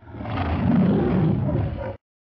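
A roar-like sound effect for an animated logo ident, low and rough. It comes in suddenly, lasts about two seconds and cuts off abruptly.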